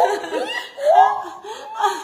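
Several women laughing together in repeated bursts.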